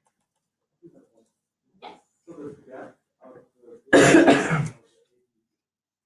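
A person coughing twice in quick succession, loud and close, about four seconds in, after a few faint, indistinct murmured sounds.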